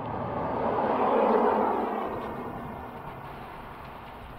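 A van driving past on asphalt: tyre and engine noise swells to a peak about a second in, then fades as it drives away. Its tyres run over a road covered in Mormon crickets.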